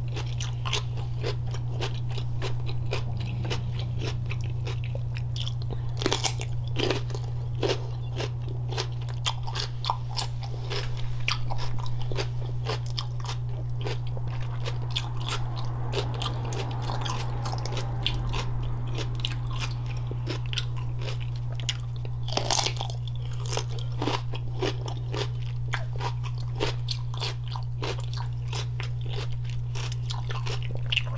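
Close-miked crunching and chewing of raw cucumber dipped in a wet, saucy seafood-boil sauce: repeated crisp, wet bites and crunches, some sharper than others, over a steady low hum.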